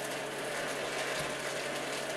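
Electric desktop paper shredder running steadily, its motor and cutters whirring as they shred a sheet of paper.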